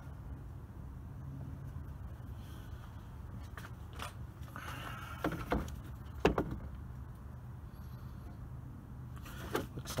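A steady low hum with a few sharp clicks and knocks midway and again near the end, like handling noise.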